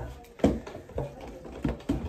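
A felt-tip marker writing on paper: about half a dozen short taps and strokes spread over two seconds, as a drawn number is written into a grid.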